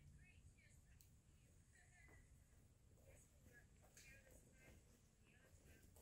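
Near silence: quiet evening outdoor ambience with faint, short high chirps scattered through it.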